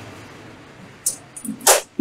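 Low room tone, then a few faint clicks of a copper pipe and fitting being handled about a second in, and a short sharp hiss just before the talking resumes.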